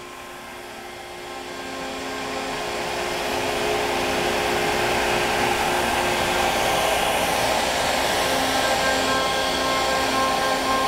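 CNC router spindle slotting 1/8 in 6061 aluminum plate with a single-flute 1/4 in end mill under a bristle dust shoe: a steady whine with a rushing, vacuum-like noise that grows louder over the first few seconds and then holds steady. It is cutting cleanly, with no chunks or anything weird heard.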